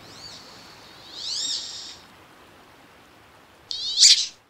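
Wood duck calling: thin, high whistled squeals that rise and fall. A short one comes at the start, a louder one about a second in, and a quick run of rising squeals near the end, over a faint steady hiss.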